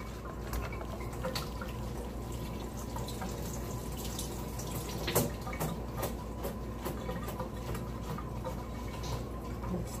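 Kitchen tap running with a steady hiss of water, mixed with scattered light clicks and taps from a clear plastic salad clamshell being handled; one sharper click about five seconds in.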